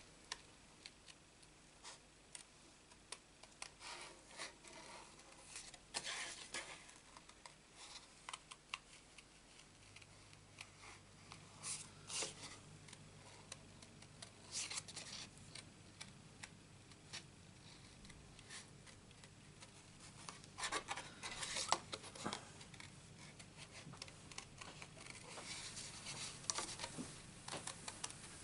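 Small craft scissors snipping around a stamped flower cut from cardstock: quiet, irregular short snips, with a few louder clusters of cuts.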